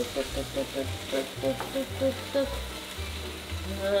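Slices of meat frying in a pan on a gas stove, a steady sizzle, under light background music with short repeating notes and a bass line.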